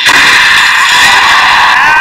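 The crack of the starting gun for a 100 m sprint final, then a stadium crowd cheering loudly as the sprinters leave the blocks.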